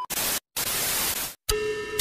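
Static hiss sound effect used as an edit transition: a short burst of white noise, a brief drop to dead silence, then a longer burst of almost a second that cuts off abruptly.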